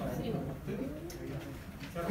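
Faint, indistinct voices murmuring in a classroom, quieter than the lecturer's speech on either side.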